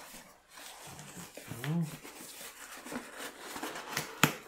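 Cardboard box being worked open by hand, a continuous close scraping and rustling of cardboard flaps, with a sharp click near the end.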